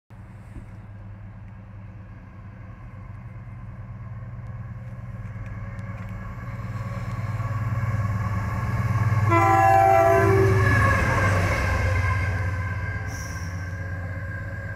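GE Class 70 diesel locomotive running light engine past, its V16 engine drone growing louder as it approaches and fading as it goes away. Its two-tone horn sounds for about a second just after nine seconds in, as it passes.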